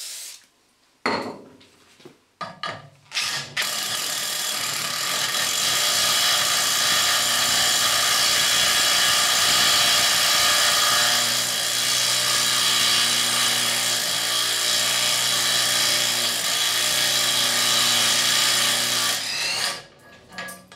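Two short sprays of cutting lubricant, then a compact DeWalt brushless impact driver hammering an Impacta step cutter through 6 mm steel plate for about fifteen seconds before it stops. It struggles in places, lacking the torque of an impact wrench.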